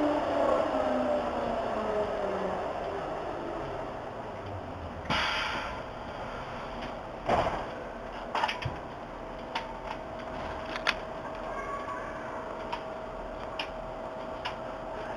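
Hamburg U-Bahn DT3-E train's motor whine falling in pitch as it brakes to a stop at the platform. Once it stands, a short hiss about five seconds in, a louder knock about two seconds later, and a few scattered clicks, over a faint steady hum.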